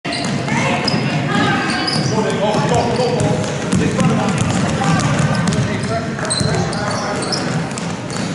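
A basketball being dribbled on a hardwood gym floor, short sharp bounces under a steady background of spectators' voices and shouts in the gym.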